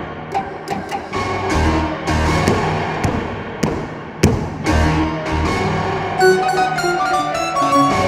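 Concert grand piano played percussively: low booming bass notes and sharp knocks, then a quick flurry of high notes over the last two seconds.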